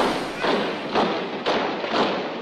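A steady beat of thuds, about two a second, in a music track, between louder heavy rock passages.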